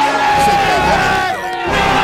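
A group of men shouting and cheering in long, drawn-out yells, with background music and a low bass line underneath.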